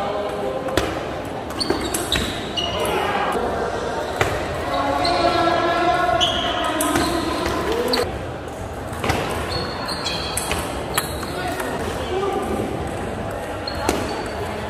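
Table tennis ball clicking off the table and the paddles in short rallies: sharp, irregular ticks. People's voices talk in the background, loudest around the middle.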